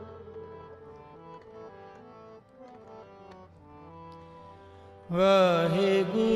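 Harmonium playing a soft melodic phrase of steady held notes as shabad kirtan accompaniment. About five seconds in, a man's voice comes in loudly, singing a wavering melismatic line over it.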